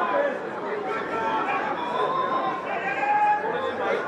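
Several voices shouting and calling over one another, rugby players and touchline spectators during a scrum and the attack that follows, with no single voice standing out.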